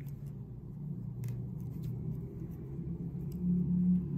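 A few faint, scattered clicks of metal circular knitting needle tips and bead stitch markers as stitches are worked, over a steady low hum.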